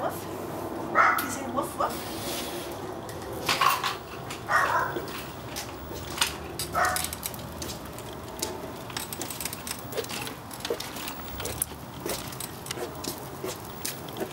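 Dogs barking in short bursts, about six times over the first seven seconds. After that come light clicks and rattles as a stroller rolls along a concrete walk.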